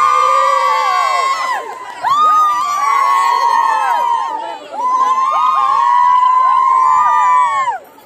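A group of women raising a festive cheer together, three long, drawn-out calls in a row with short breaks between them, many voices overlapping: the celebratory cry raised over the Pongal pots.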